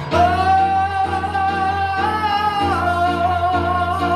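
A young man sings one long held high note that steps down slightly about two-thirds of the way through, over a recorded backing accompaniment.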